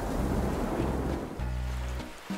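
Cartoon storm sound effect of rain and surging water over background music. About one and a half seconds in, the water noise drops away under a low held chord.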